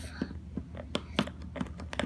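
Small plastic Play-Doh tools clicking and tapping against a plastic mold and tabletop as excess dough is trimmed off, a handful of irregular light clicks.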